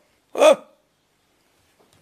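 A man's voice makes one short syllable with a falling pitch about half a second in.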